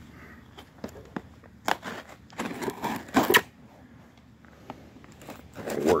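A cardboard shipping box being handled: scattered light knocks and clicks, with a louder rasping scrape about two and a half to three and a half seconds in.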